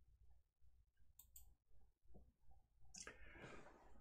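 Near silence: faint room tone with a few faint clicks about a second in, and a soft rustle in the last second.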